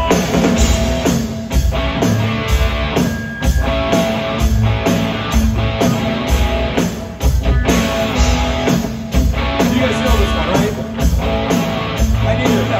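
Live rock band playing an instrumental passage: electric guitars and bass over a drum kit keeping a steady beat.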